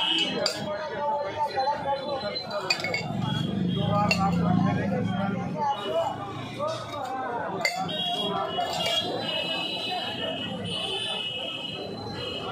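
Stainless steel tumblers clinking now and then as they are picked up and set down, over steady background chatter of voices.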